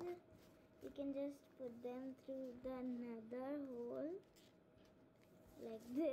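A child's voice making sustained, wordless vocal sounds from about one to four seconds in, with the voice starting again near the end.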